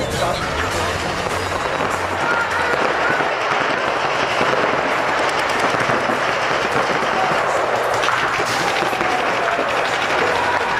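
Several paintball markers firing in fast, overlapping strings of pops.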